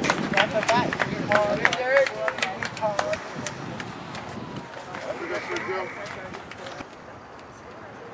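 Indistinct voices of players and spectators calling out, with scattered short clicks, for the first three seconds or so, then quieter open-air ambience.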